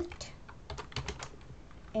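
Typing on a computer keyboard: a run of irregular, quick key clicks as code is entered.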